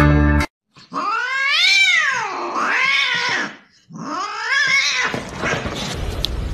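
A cat gives a long, drawn-out yowl that swells up and down in pitch twice, then a shorter meow about four seconds in that rises and falls. Guitar music cuts off just before the first call.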